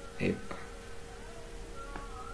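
A faint, steady buzzing hum with a thin wavering whine above it, and a brief vocal sound near the start.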